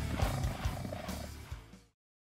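The last seconds of a heavy rock song: distorted band sound fading out with a few last hits, falling to silence just before the end.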